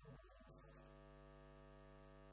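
Near silence: a steady electrical mains hum, with a brief faint disturbance in the first half second.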